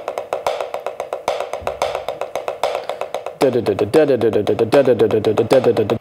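Wooden drumsticks playing a fast, even pattern on a rubber practice pad, about eight strokes a second. About three and a half seconds in, a lower pitched part joins and the strokes get louder.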